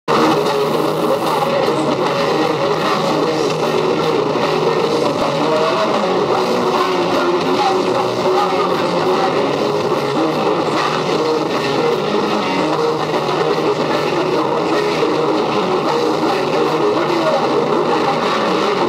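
Heavy metal band playing live through a PA, with distorted electric guitars, bass guitar and drums making a loud, dense, unbroken wall of sound.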